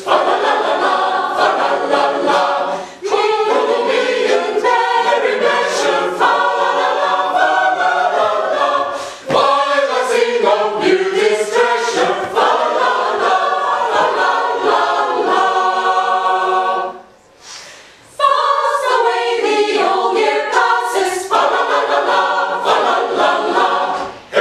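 Mixed choir of men and women singing together, with a pause of about a second some seventeen seconds in before the singing resumes.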